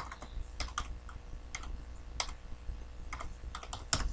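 Computer keyboard keys tapped in an uneven run as a long number is typed, with a sharper click near the end as the entry is submitted. A faint low hum runs underneath.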